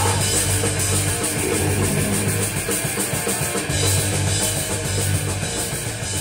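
Punk rock band playing an instrumental stretch without vocals: drum kit and electric guitars.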